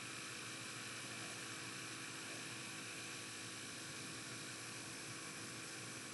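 Faint, steady hiss with a low electrical hum: the background noise of the lecture's voice recording while no one speaks.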